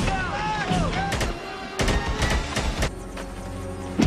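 Fight-scene film soundtrack: voices shouting at first, then a quick run of sharp hits from the fight, and steady low music coming in about three seconds in.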